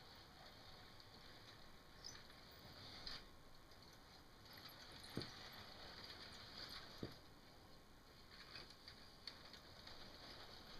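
Faint rolling of tinplate Lionel passenger cars moving slowly along O-gauge track, with soft scattered clicks of the wheels and two sharper clicks, one about halfway through and another two seconds later.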